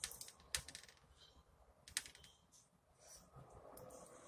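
Faint close-miked eating sounds of lamb birria being eaten: scattered sharp mouth clicks and smacks of chewing, with the strongest ones about half a second and two seconds in.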